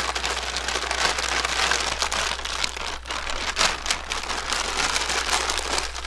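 Feed bag being rolled by hand into a tube: continuous rustling and crinkling, with a few sharper crinkles.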